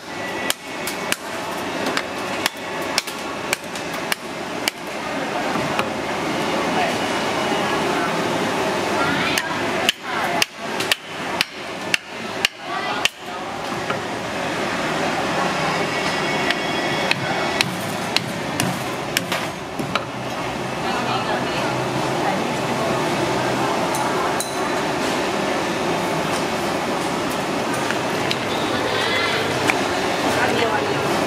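Hammer blows cracking the shell of a spiky conch on a wooden chopping block, sharp knocks about twice a second at first, then a quicker run of hard strikes about ten seconds in. After that the knocking stops, and a steady hubbub of voices carries on.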